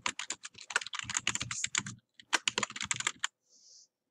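Fast typing on a computer keyboard: a quick run of keystroke clicks, a brief pause, then a second shorter run. A short soft hiss follows near the end.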